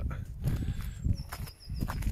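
Wind buffeting a phone's built-in microphone outdoors, with a few footsteps, and in the second half a faint, high warbling bird song.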